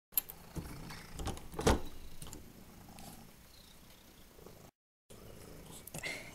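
Domestic cat purring with a steady low rumble, broken by a few knocks in the first two seconds, the loudest near the two-second mark.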